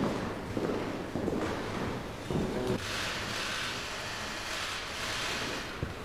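Indistinct noise of several people moving about a large room: footsteps on a parquet floor and rustling, with a steady hiss from about halfway through.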